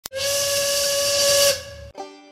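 A factory steam whistle blows one steady blast over hissing steam, the shift whistle calling workers to work. It holds for about a second and a half, then cuts off and dies away.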